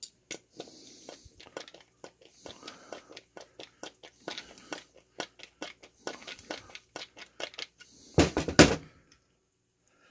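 Phillips wood screw being driven by hand into a wooden block with a multi-bit screwdriver: irregular creaks and crackling clicks as the threads cut into the wood and the handle is turned and regripped. A louder handling noise comes about eight seconds in.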